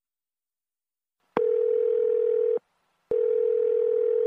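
Telephone ringback tone heard on the caller's end while the line rings unanswered: a steady low tone with a slight warble, sounding twice. Each ring lasts a little over a second, the first starting just over a second in and the second about three seconds in.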